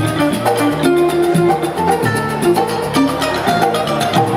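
Live Balinese jazz-fusion ensemble playing: electric guitar and bass guitar with a bamboo suling flute, a gamelan mallet instrument and kendang hand drum, over a fast steady pulse.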